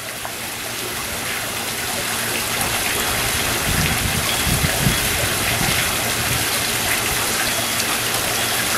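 Steady rush of running water in a backyard swimming pool, with a few low thumps about four to five seconds in.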